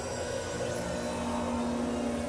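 Dense experimental electronic drone music, several layers sounding over one another, with a steady held low tone and no clear beat.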